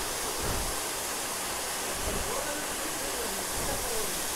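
Tall waterfall plunging into a shallow rocky pool: a steady, even rush of falling water.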